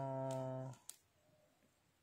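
A woman's voice holding one long, flat-pitched drawn-out vowel for under a second, cutting off suddenly into silence.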